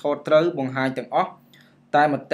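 A person speaking in continuous phrases, pausing briefly in the second half.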